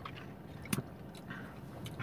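Soda being sipped and swallowed from a glass bottle: quiet mouth and swallowing sounds, with one sharp click just under a second in.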